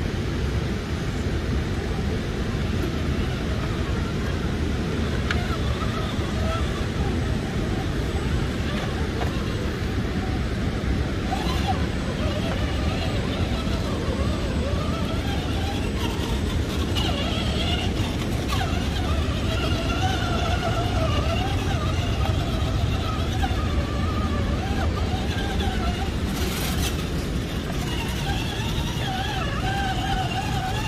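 A steady low rushing noise throughout, with indistinct voices talking faintly in the background from about twelve seconds in.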